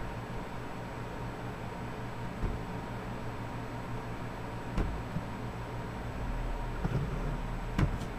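Steady low fan hum, with three faint single clicks spaced a couple of seconds apart. The last click, near the end, is the Restore button being clicked.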